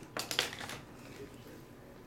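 A few light clicks and crinkles of plastic-wrapped trading-card packs being tapped and let go by hand, all in the first second, then quiet.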